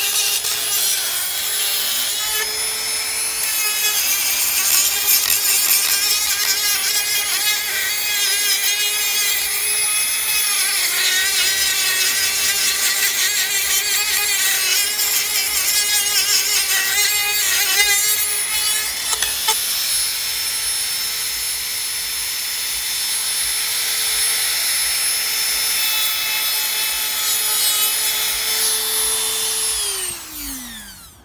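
Handheld rotary tool with a sanding drum running at a steady high whine while sanding the cut edge of a wooden cutout, the rasping of the abrasive on the wood coming and going as it is worked along the edge.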